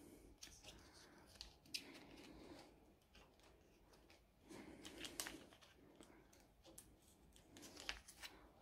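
Faint rustling and crinkling of clear plastic binder pocket sleeves as paper filler cards are slid into them, with a few light ticks.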